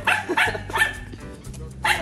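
A dog barking: a few short barks about half a second apart, over background music.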